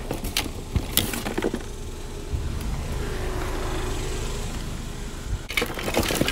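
Rummaging through a cardboard box of discarded items: a few sharp clicks and clinks of a glass perfume bottle and plastic things being handled in the first second or so and again near the end. In between is a steady low rumble that swells and fades.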